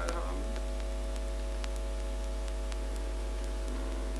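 Steady electrical mains hum: a low drone with a set of steady higher tones above it. A few faint, scattered clicks from laptop keys come through as a command is typed.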